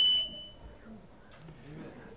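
A sound system squealing with a single steady high tone that fades out within the first second. The system is faulty and cheap, and the speaker wants it fixed or replaced.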